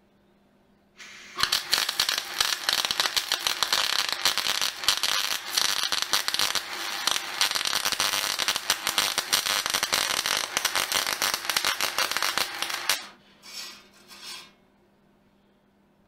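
Electric arc welding on thin-wall steel box section: the arc crackles in one continuous run of about twelve seconds as a bead is laid, then two short bursts follow near the end.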